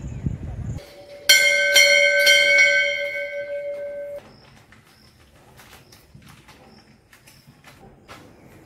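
A temple bell struck about three times in quick succession, its ringing cut off abruptly about four seconds in. Faint bird chirps and small clicks follow.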